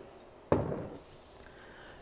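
A single knock about half a second in, as a bottle of oil is set down on a wooden tabletop.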